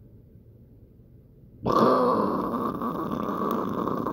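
A loud, rough growling vocal noise from a person, starting suddenly about halfway in and held for a couple of seconds.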